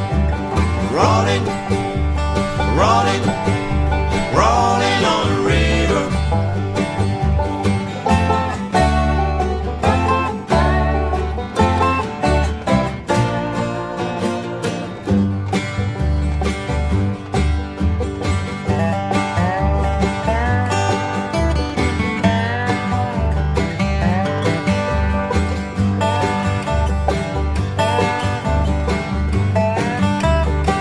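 Acoustic country-style band playing an instrumental break, with strummed acoustic guitar and bass under a plucked-string lead. The lead notes bend in pitch over the first few seconds.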